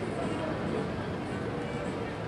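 Indistinct voices of people out on a town street, mixed with steady outdoor street noise; no single word stands out.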